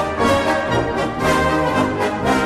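A recording of a brass band playing full, sustained chords in several parts.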